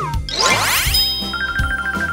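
Cartoon sound effects over children's backing music with a steady beat: a quick rising sweep about half a second in, then a rapid, high, tinkling repeated note from just past the middle onward.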